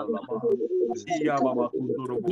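A person praying aloud in tongues: a fast, continuous stream of non-English syllables.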